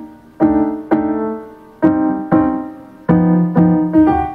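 A keyboard track playing back from the DAW through the mixer: six piano-like chords, struck in pairs, each ringing on and fading.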